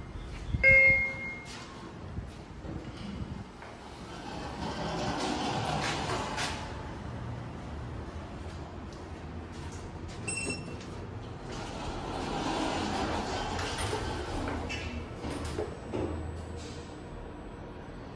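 Schindler 3300 traction elevator: an arrival chime sounds about a second in, then the car doors slide open. A short electronic beep follows near the middle, then the doors slide closed.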